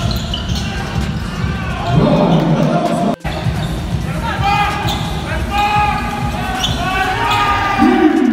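Basketball dribbled on a hardwood court during a game, with the echo of a large arena. The sound drops out for an instant about three seconds in.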